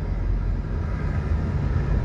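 Steady low rumble with a faint hiss, typical of a moving vehicle heard from inside the cabin.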